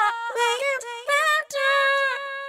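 A VOCALOID5 preset soulful vocal phrase previewing: a synthesized female singing voice, unaccompanied, runs through a short melodic line of bending notes and settles into a long held note near the end.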